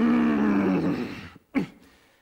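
A man's drawn-out angry roar, sliding slowly down in pitch and lasting about a second and a half, then a short sharp sound and near quiet.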